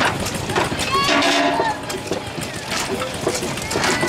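Jaw rock crusher, belt-driven by a Burrell steam traction engine, running and cracking rocks with a rapid clatter of knocks, a few a second. A voice calls out briefly about a second in.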